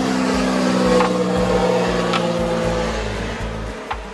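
A motor vehicle's engine humming steadily, its pitch falling slightly as it fades toward the end, with a few light clicks.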